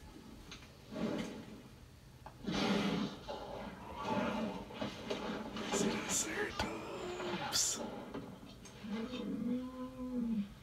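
Film soundtrack playing from a television and picked up in the room: characters' voices with short, high-pitched bursts of sound effects, and near the end one drawn-out pitched call.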